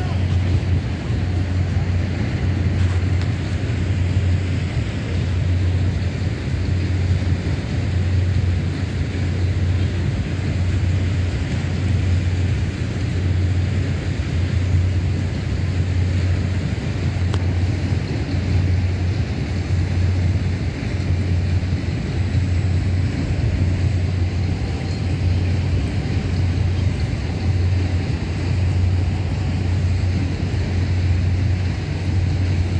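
Tower swing ride running: a steady rumble with a low hum that swells about once a second under a wash of noise.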